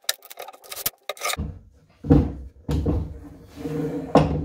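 Heavy beech workbench parts handled on a wooden workbench top: a few light clicks at first, then from about a second and a half in, dull wooden knocks and scraping as the blocks and the laminated beech top are set down and shifted into place.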